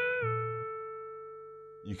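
Electric guitar played clean: the last tapped note of a pentatonic run on the G string wavers slightly up in pitch, then rings on and fades away.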